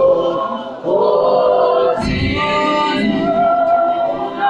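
A church congregation singing a worship song together, many voices holding long notes in phrases. A short knock about halfway through.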